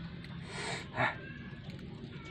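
Man eating fried catfish: a short hissing breath, then a brief wet mouth sound about a second in.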